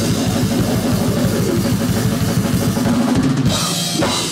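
Death metal band playing live: rapid, driving bass drum and cymbals under distorted electric guitars and bass. A harsh screamed vocal comes in near the end.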